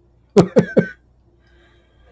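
A man's brief chuckle: three quick voiced bursts about half a second in.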